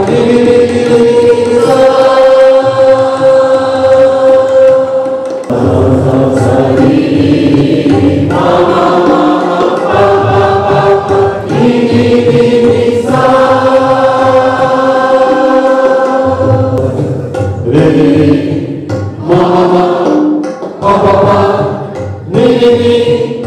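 A group chanting together in long held notes, each held for several seconds, with shorter phrases near the end.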